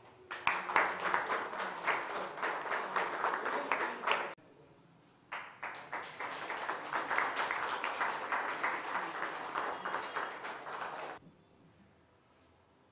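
A crowd clapping in two stretches of applause: the first cuts off suddenly about four seconds in, the second starts about a second later and dies away near the end.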